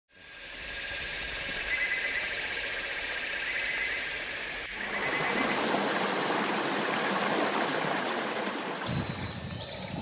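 Rainforest ambience with high, steady insect calls, cut about halfway through to the even rush of a jungle waterfall. Near the end the water gives way to steady, high insect calls again.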